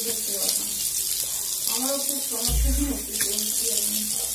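Tap water running steadily into a sink while someone washes her face, with a faint voice murmuring in the background about halfway through.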